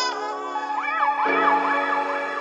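Background music with a siren-like tone that starts about half a second in and wails quickly up and down several times over the chords.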